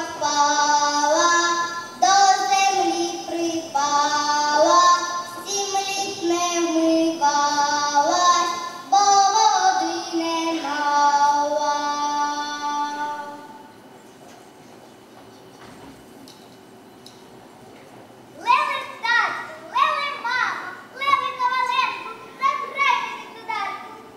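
A girl singing a folk song at the microphone in a high child's voice, with long held notes; the singing stops about 13 seconds in. After a few seconds' lull, a child's voice begins speaking in quick, short phrases.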